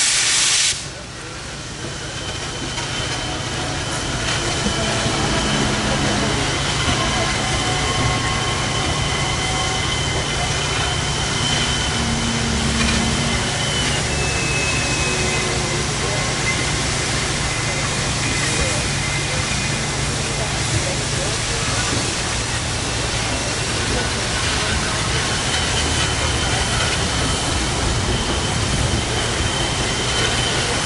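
Norfolk & Western 611, a J-class 4-8-4 steam locomotive, with a loud rush of steam that cuts off suddenly about a second in, then a steady hiss of steam and a low rumble as the locomotive moves slowly along.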